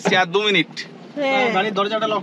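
Speech: people talking and laughing inside a car, with a short pause about half a second in.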